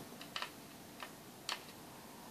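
Screwdriver working screws out of the plastic case of a Syma X5C radio controller: a few faint, sharp clicks of metal on screw and plastic.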